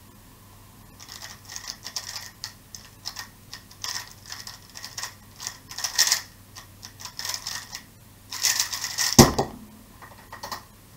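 A MoYu RS3M 2020 plastic speedcube turned very fast by hand in a speedsolve: rapid bursts of clicking turns, starting about a second in and pausing briefly near eight seconds. About nine seconds in, a single thump as the hands slap down on the speed timer to stop it.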